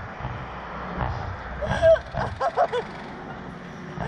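Low rumbling noise on the ride's onboard microphone, with a woman laughing in short bursts from about a second and a half in.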